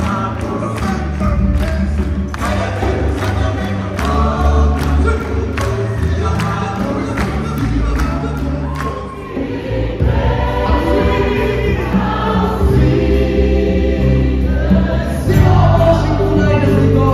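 Choir and congregation singing a gospel-style praise song, with the crowd clapping on the beat about twice a second. About nine seconds in the clapping stops and the singing carries on.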